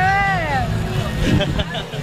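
Speech: one long, drawn-out spoken 'é' that rises and then falls in pitch in the first half second, followed by fainter scattered voices over crowd chatter and a steady low background hum.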